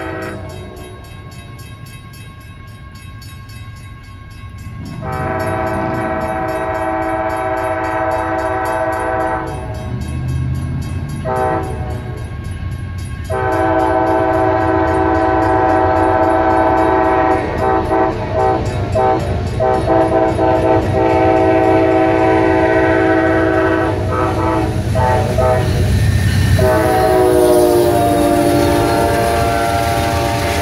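Amtrak GE P40DC diesel locomotives sounding a multi-chime air horn in the grade-crossing pattern: long, long, short, then a final long blast held for well over ten seconds. The diesel engines' rumble and wheel noise build beneath it, and near the end the horn drops slightly in pitch as the locomotives pass.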